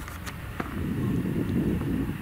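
Grimme Varitron 470 self-propelled potato harvester running in the field: a steady low engine drone, with a heavier rumble from the lifting and cleaning gear that grows louder about half a second in. A few faint clicks near the start.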